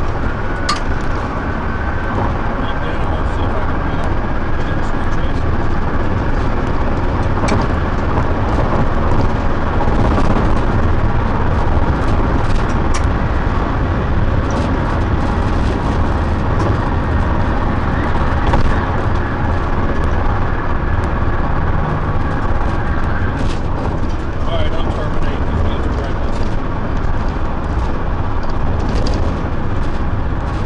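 Road and engine noise of a police patrol car driving at freeway speed, a loud steady rumble with a thin steady tone above it that stops about three-quarters of the way through, and scattered short clicks.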